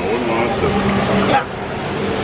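Small tour boat's motor running with a steady low hum, and water rushing and churning as it moves off; the rush eases about a second and a half in. Voices are heard faintly underneath.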